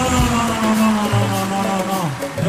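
Live band music with a male singer holding one long note that falls slightly in pitch, over bass and drums.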